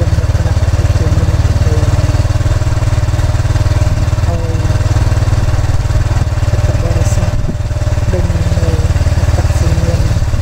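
Small motorcycle engine running steadily under way, heard from on board, with a brief dip in loudness about seven and a half seconds in.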